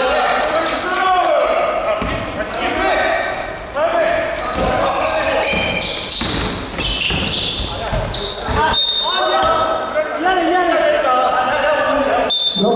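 A basketball bouncing on a hardwood gym floor as it is dribbled, under men's voices calling out, echoing in a large hall.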